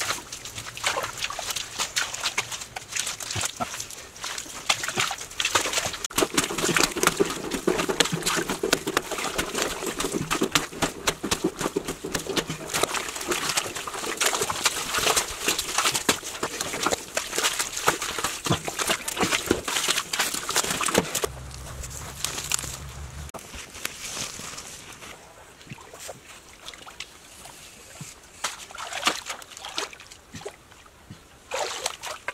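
Muddy groundwater sloshing and splashing at the bottom of a hand-dug pit as a man wades and scoops mud and water into a woven basket. The splashing is busy for most of the stretch and thins out over the last several seconds.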